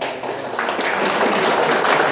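Audience applauding, the clapping filling in about half a second in and holding steady.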